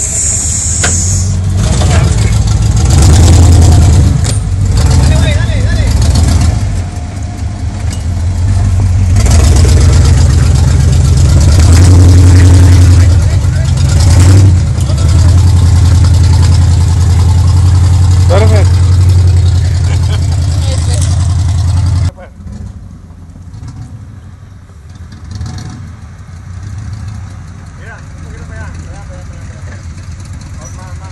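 Jeep Wrangler's V8 engine, heard close and loud, revving in surges under load as the Jeep crawls over rocks. About 22 seconds in the sound drops suddenly to a much quieter engine running farther off.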